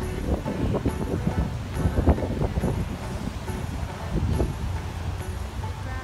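Gusty wind buffeting the microphone, an uneven low rumble, with background music under it.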